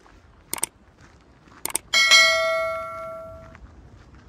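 Subscribe-button overlay sound effect: two quick double mouse clicks, about half a second and one and a half seconds in, then a bright notification bell ding about two seconds in that rings out for over a second.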